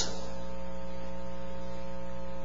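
Steady electrical mains hum from the church's sound or recording system: an unchanging low buzz made of several steady tones.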